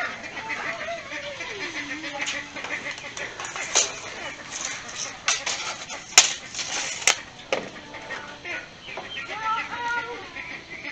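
Backyard chickens clucking and calling, with a few sharp clicks, the two loudest about six and seven seconds in.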